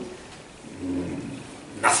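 A short pause in a man's speech in a small room, with a brief faint low hum about a second in; his speech ends at the start and resumes near the end.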